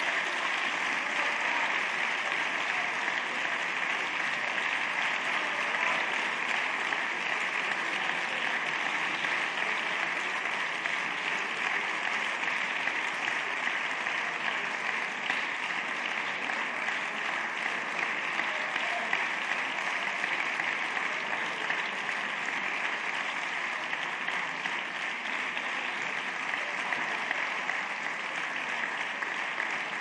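Sustained applause from a large chamber full of deputies clapping, unbroken throughout and easing off slightly near the end.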